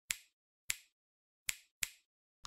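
Four sharp snap-like clicks, each dying away quickly, with dead silence between them. They are the sound effects of an intro title animation, one for each letter as it appears.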